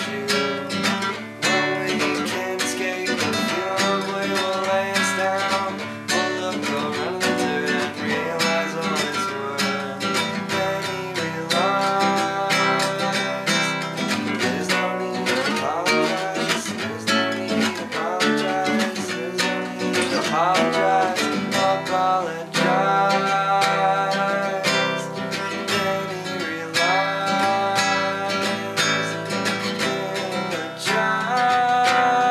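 Acoustic guitar strummed steadily through a song.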